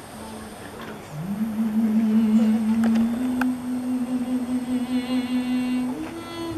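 A woman's voice singing one long held wordless note in a slow traditional Greek song: after a quiet start it slides up about a second in and is held steady, stepping slightly higher partway through.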